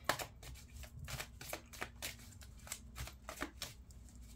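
A deck of oracle cards shuffled by hand, the cards sliding and slapping against one another in a run of soft, irregular clicks, several a second.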